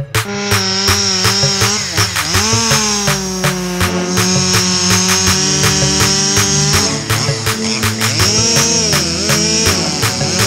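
Background music with a steady beat, over a small two-stroke chainsaw running at high revs as it cuts through a beech limb. The saw's pitch dips briefly about two seconds in and wavers again near the end.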